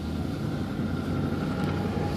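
Steady road and engine hum inside a moving car's cabin.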